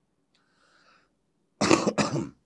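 A man coughing once into his fist near the end, after a second and a half of near quiet with only a faint breath.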